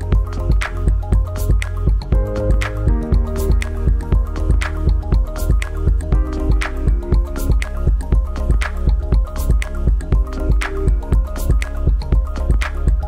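Background music with a steady beat over a deep bass line.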